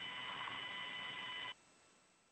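Radio hiss with faint steady tones on the open air-to-ground voice link from the Crew Dragon capsule, cutting off suddenly about one and a half seconds in as the transmission ends.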